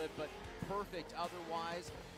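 Speech at a lower level than the surrounding talk, with faint music underneath.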